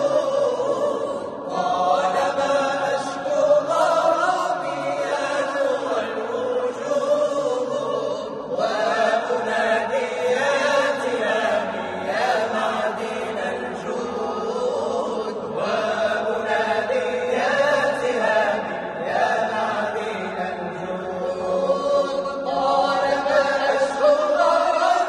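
Unaccompanied vocal group, men's voices with a woman's voice among them, chanting a Moroccan melody together with long, ornamented held notes. The singing goes on with only brief pauses for breath.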